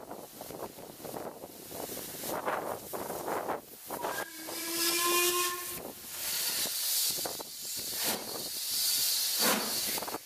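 Steam locomotive whistle blown once for about a second and a half, roughly four seconds in, then loud steam hissing over the rumble of the moving train.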